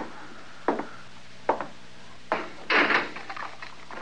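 Radio-drama sound effects: four footsteps on wooden boards at a steady walking pace, then a louder clatter of the jail cell door shutting, followed by faint clicks of the lock.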